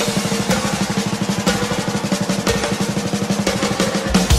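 Rock drum kit in a live concert recording, played as a fast, even drum roll of many strokes a second on snare and toms, with a steady low note held underneath.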